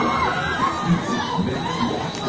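Riders on a giant swinging pendulum ride shrieking and shouting together as the ring of seats swings and spins, many overlapping voices wavering up and down in pitch.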